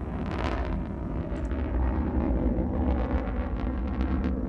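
New Shepard booster's BE-3 liquid-hydrogen rocket engine firing during ascent: a steady, deep rumbling noise.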